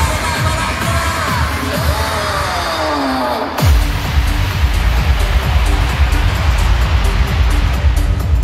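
Live pop music over a concert PA: a falling pitch sweep, then about halfway through a sudden heavy bass drop into a steady beat. Stage CO2 jets fire at the drop.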